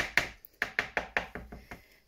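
Green silicone whisk beating a thick egg-and-flour batter in a mixing bowl, knocking against the bowl's side about five times a second. The strokes fade out near the end.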